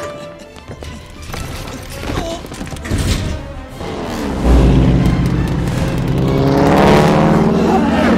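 Film soundtrack: a dramatic orchestral score with heavy booming impacts, the biggest about four and a half seconds in. A biplane's radial engine climbs steadily in pitch as it closes in, near the end.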